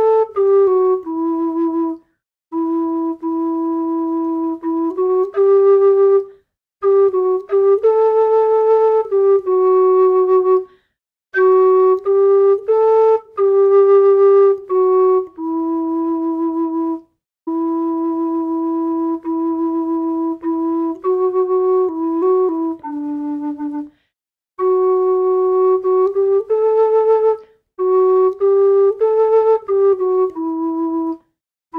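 Carbony carbon-fibre low D tin whistle playing a slow melody phrase by phrase, mostly held notes, with short silent breaks between phrases.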